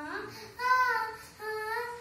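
A young girl singing unaccompanied: two held notes, the second slightly higher, with a short break between them.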